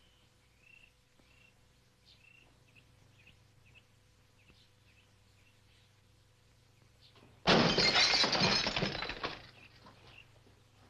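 Faint bird chirps. Then, about seven and a half seconds in, a sudden loud crash of a glass window pane shattering, which lasts about two seconds before dying away.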